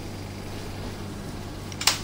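A single sharp snip of scissors cutting a strip of double-sided tape near the end, over a steady low electrical hum.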